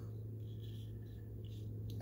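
Small scissors faintly snipping through the leathery shell of a ball python egg, with a short click near the end, over a steady low hum.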